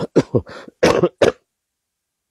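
A man coughing, a quick run of about six short coughs that stops about a second and a half in.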